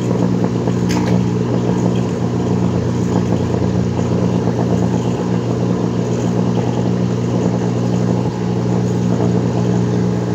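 A vacuum tube Tesla coil, a hard-driven Hartley valve oscillator feeding a resonator coil, throwing a flame-like arc from the top of its coil. It makes a loud, steady hum-like buzz with a single sharp crackle about a second in.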